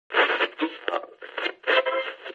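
A person speaking in short broken phrases, the voice thin and narrow, like speech heard over a radio.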